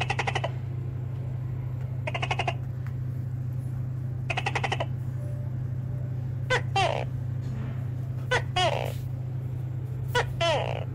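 Tokay gecko calling: three short rattling bursts about two seconds apart, then two-note calls, each a short note followed by a longer falling one. A steady low hum runs underneath.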